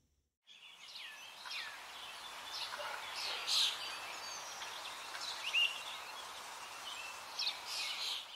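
Birds chirping and whistling in short calls over a steady hiss of outdoor ambience, starting about half a second in.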